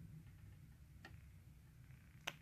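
Near silence: room tone with a low hum, and one faint click about a second in.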